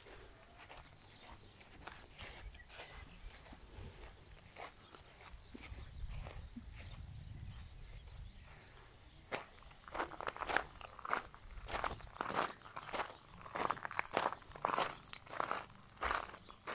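Footsteps of a person walking on grass, faint at first, then louder and more regular over the second half at about two steps a second.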